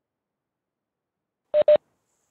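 Two short electronic beeps in quick succession near the end, the kind of notification tone a video-call app plays.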